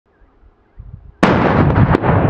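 A loud blast starts suddenly about a second in, after a faint low thump, and carries on as a steady, heavy rumble.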